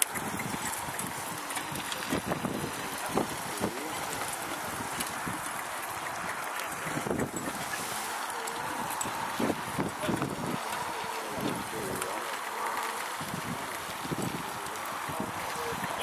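Indistinct voices over a steady outdoor hiss, likely wind on the microphone. The soft hoofbeats of a horse pulling a carriage come through now and then.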